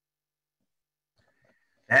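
Near silence on a video call, the audio gated to nothing between speakers; a man's voice starts right at the end.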